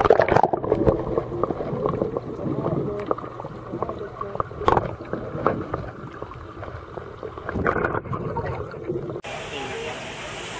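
Water sloshing and gurgling at a koi pond, under a background chatter of voices, with scattered short splashes. The sound changes abruptly about nine seconds in.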